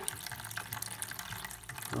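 Homemade wine running from a siphon tube into a plastic bucket: a steady trickle of liquid filling the bucket.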